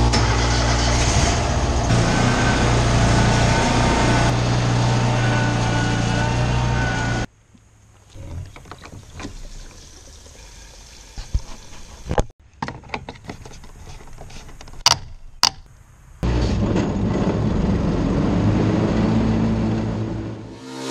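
John Deere riding lawn mower engine running steadily, cutting off suddenly about seven seconds in. A much quieter stretch follows with scattered light clicks and knocks while fuel is poured into the mower from a plastic gas can, and the mower engine runs again from about sixteen seconds.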